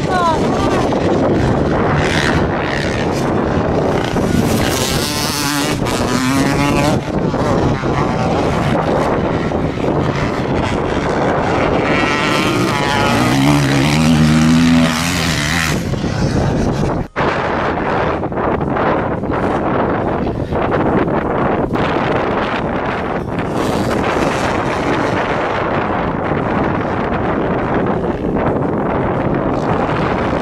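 Motocross dirt bike engines revving up and falling off as the bikes ride the track, over heavy wind noise on the microphone. The revs climb most clearly about five seconds in and again around thirteen to fifteen seconds, with a brief drop in sound near seventeen seconds.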